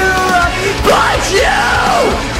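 A man screaming vocals over a metalcore backing track. A held note gives way about half a second in to yelled syllables that swoop up and down in pitch.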